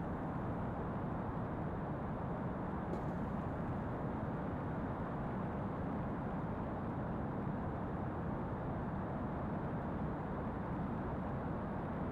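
Steady rushing background noise with no distinct pitch or events, and a faint click about three seconds in.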